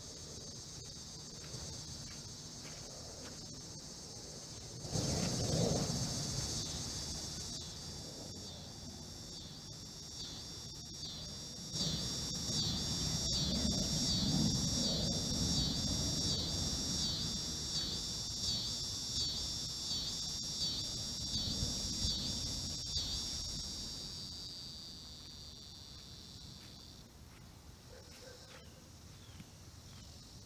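Insects buzzing high and steadily in chorus, pulsing evenly through the middle stretch and stopping near the end. Beneath them a low rumble swells twice, briefly about five seconds in and then for about ten seconds through the middle.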